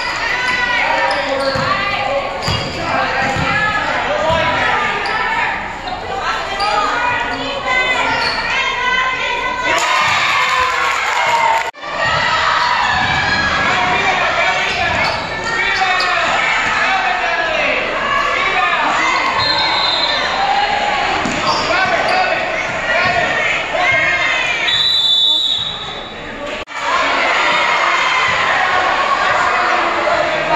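A basketball being dribbled and bouncing on a gym's hardwood floor, with many players' and spectators' voices calling and shouting throughout. A short, high whistle blast comes about 25 seconds in, as play is stopped.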